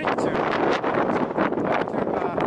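Wind buffeting the camera microphone, a loud, uneven rush of noise with frequent short gusts.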